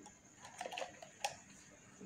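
A few faint clicks and taps from a plastic funnel and plastic bottle being handled on a glass tabletop, with one sharper click a little past halfway.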